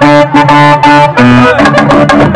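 Loud music with a horn-like melody of short, repeated held notes over a beat.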